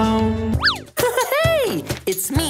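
The held final chord of a children's song ends about half a second in. Two cartoon boing-style sound effects follow: a quick sharp rise and fall in pitch, then a slower glide that arches up and back down.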